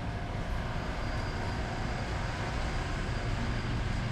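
Metal warehouse shopping cart rolling over a concrete store floor: a steady, low rattling rumble of the wheels, over the hum of a large store.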